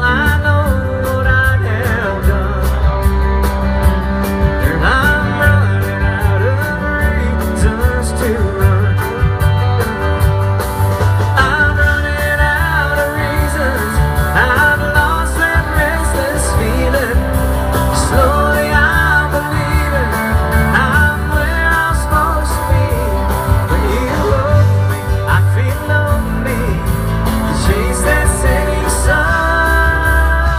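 A live country band playing through a PA, with electric guitars, electric bass and keyboards over a steady beat.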